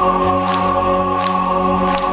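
Live electronic band music from the stage: sustained, choir-like chords, with a sharp hissing hit like a hi-hat about every three-quarters of a second.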